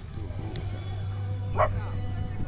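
Outdoor background of voices over a steady low hum, with one short, loud bark-like call about one and a half seconds in.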